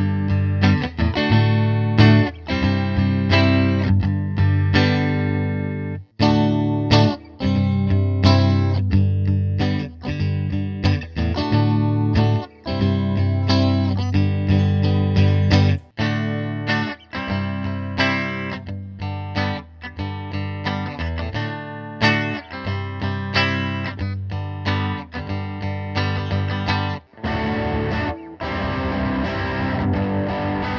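Squier 40th Anniversary Stratocaster electric guitar played through an amp on a clean tone, picked chords and single notes ringing out, first on the middle single-coil pickup and from about halfway on the brighter bridge pickup. Near the end it switches to the neck pickup with distortion, turning thicker and grittier.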